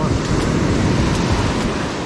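Ocean surf washing up a sandy beach: a steady rush of breaking waves and foam.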